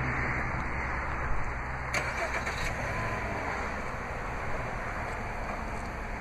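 A 2013 Dodge Dart's 2.0-litre Tigershark four-cylinder running at idle just after a remote start, a steady low hum under a continuous rush of noise, with a couple of faint clicks.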